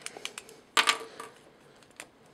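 Plastic parts of a Mastermind Creations Azalea transforming robot figure clicking and clacking as they are handled and unpegged: a few light clicks, then a louder clack a little under a second in and another shortly after.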